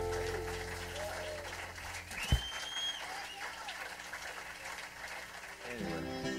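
A live country band's held chord rings out and the bass stops with a thump about two seconds in. Audience applause follows, with a high whistle. Just before the end an acoustic guitar starts picking the next passage.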